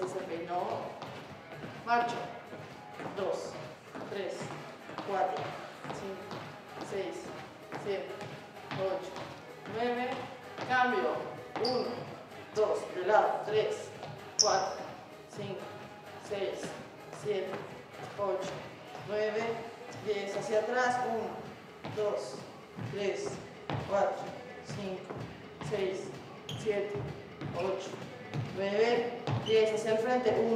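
Women's voices speaking throughout, with thuds of feet stepping on a wooden floor.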